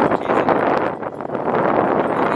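Wind buffeting the phone's microphone: a loud, steady rumbling hiss.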